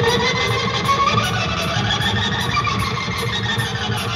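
Rock band playing live through an arena PA, with distorted electric guitars and bass at full volume. The band has just come in with a sudden loud start.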